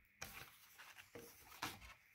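Faint rubbing and a few soft scrapes of a cardboard comic backing board being slid and lifted off a poly-bagged comic book.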